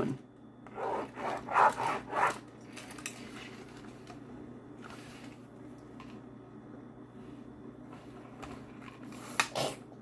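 Stylus scratching across a plastic toy drawing board as a picture is drawn, in several quick strokes in the first couple of seconds, then fainter. A couple of sharper scrapes come just before the end.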